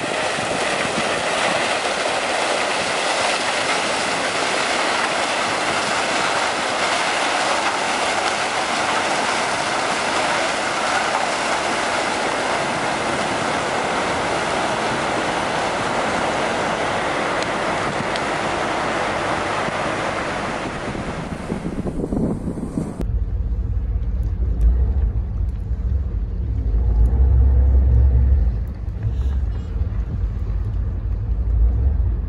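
Icebreaker Taymyr's bow crushing and grinding through pack ice: a steady, dense noise for a little over twenty seconds. It then cuts off abruptly and gives way to a deep low rumble.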